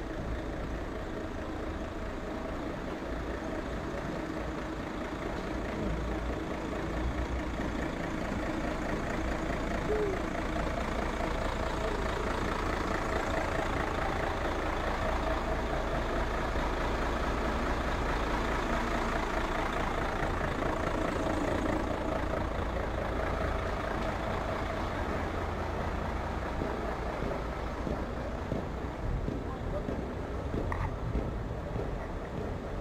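A concrete mixer truck's diesel engine running steadily amid city street noise, with people talking; it is louder through the middle of the stretch.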